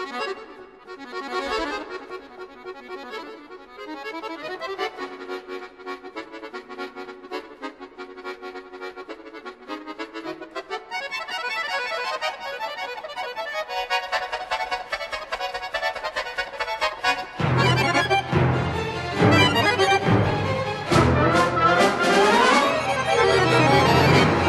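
Scandalli button accordion playing a fast passage high in the treble, growing steadily louder. About two-thirds of the way through, deep bass notes and loud, full chords come in.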